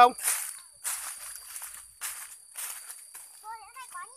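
Footsteps crunching through dry fallen leaves: irregular steps, roughly two a second. A steady high drone of insects runs underneath.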